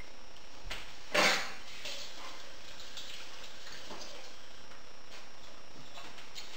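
A brief clatter about a second in, then a few faint knocks and clicks: kitchen utensils and dishes being handled and set down.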